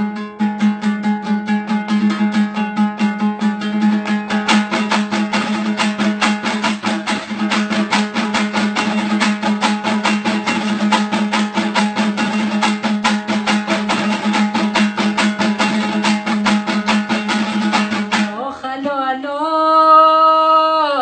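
Hazaragi dambura, a two-stringed long-necked lute, strummed in quick, steady strokes over a constant low drone. About 18 s in the strumming stops and a male voice begins singing.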